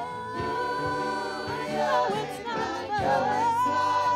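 Gospel choir singing, holding long sustained notes.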